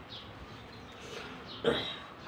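A dog barks once, a single short bark near the end.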